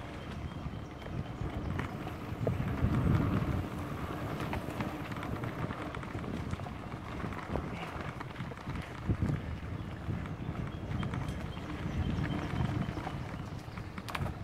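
Mountain bike riding over a dirt singletrack: tyres rolling with a steady low rumble that swells twice, and a few sharp knocks and rattles from bumps.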